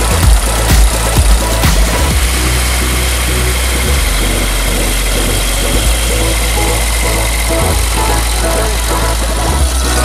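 Piston engines of light propeller aircraft running at taxi, a steady engine drone.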